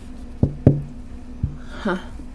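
Three knocks of a tarot deck against the tabletop: two in quick succession about half a second in, a third about a second later, each with a short low ring.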